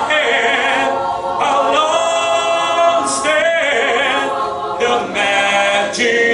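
Mixed choir of women's and men's voices singing a cappella, no instruments: held chords with vibrato in phrases of a second or two.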